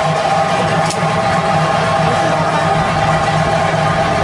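Theyyam ritual drumming, a chenda drum ensemble playing a loud, dense, steady rhythm.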